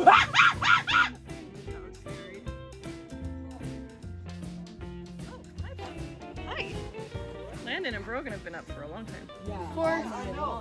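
A boy imitating a rooster's crow with his voice, a loud high call in the first second, over background music.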